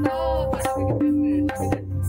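Tabla drumming on a set of tuned tablas: quick strokes on the drumheads, each ringing on at a held pitch, over a steady low bass.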